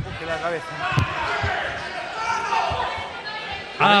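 A few dull thumps of gloved punches landing during a clinch in a boxing ring, one about a second in, another half a second later and one more near three seconds, over background voices from ringside.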